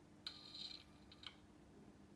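High-voltage electric arc between the electrodes in the reaction flask firing for about a second, switching on and off with a click. The arc is pulsed by a microcontroller so that the electrodes can cool.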